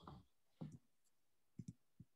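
Near silence with a few faint, short clicks: one about two-thirds of a second in and a quick pair near the end.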